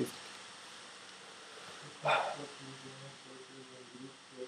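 Room tone, then a short sharp voice sound about two seconds in, followed by faint speech from a person away from the microphone.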